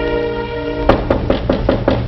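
A held chord of scene-change music, then about a second in a quick run of sharp knocks on a door.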